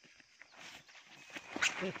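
Woven plastic sack rustling and footsteps on dirt, with a sharp loud rustle near the end followed straight away by a short vocal sound.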